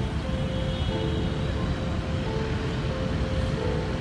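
Steady outdoor city background noise, a low rumble of traffic, with faint music of held notes underneath.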